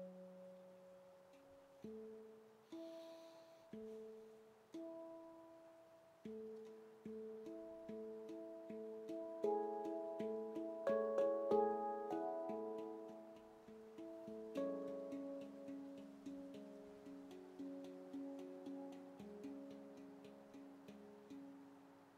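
Stainless-steel handpan, a Veritas Sound Sculptures F# pygmy with 18 notes, played by hand. Single ringing notes are struck about once a second at first. Around the middle the notes come faster and louder in overlapping runs, and then settle into a steady repeating pattern, each note ringing and slowly fading.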